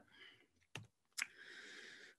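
Two faint, sharp clicks of a computer keyboard, about half a second apart, followed by a faint hiss; otherwise near silence. The keypress advances the presentation slide.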